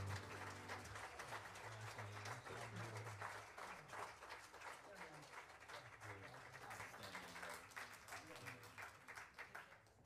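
Audience applauding, with voices calling out among the clapping. The last piano chord dies away in the first second, and the applause fades out at the end.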